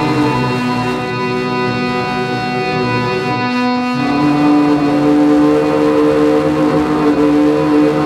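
Live electronic drone music: several held tones layered into a sustained chord. The chord shifts about a second in, and again about halfway through, when a strong lower tone comes in and the sound swells slightly.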